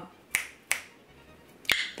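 Fingers snapping three times: two light snaps about a third of a second apart, then a louder snap about a second later.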